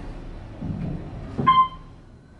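Otis Series 1 elevator car ending a rough ride: a low rumble, then a sudden clunk about a second and a half in with a short ringing ding.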